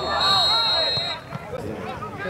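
Referee's whistle blown once, a single high steady blast lasting about a second and stopping about a second in, over men's voices talking nearby.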